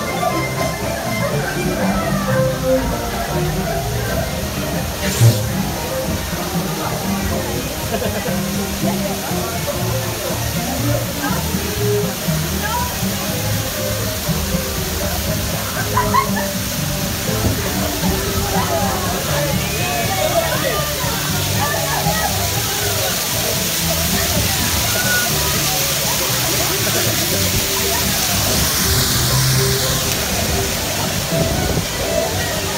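Music with voices plays over water sloshing around a log-flume boat. A rushing hiss of falling water builds over the last several seconds.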